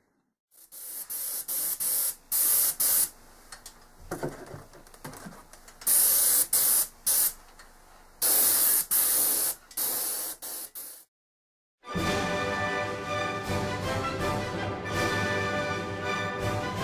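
Paint spray gun hissing in a string of short trigger bursts, some about a second long, as it sprays thinned exterior latex paint. About eleven seconds in, the sound cuts out and background music begins.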